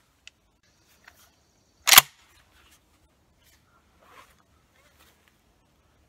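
Mossberg 935 12-gauge semi-automatic shotgun firing a single buckshot shell about two seconds in: one sharp, loud blast. A few faint clicks follow.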